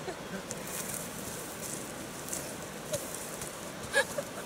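Brush and dry sticks rustling and crackling faintly as a dead black bear is hauled over the ground, with a sharp click right at the end.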